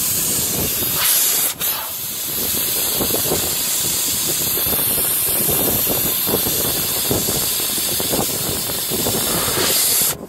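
Air hissing steadily out of a Toyota Land Cruiser's tyre valve as the tyre is deflated for driving on sand, with a short break about a second and a half in.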